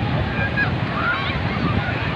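Beach ambience: wind on the microphone and surf make a steady noise, and several short, high, bending calls or cries from people or birds rise over it.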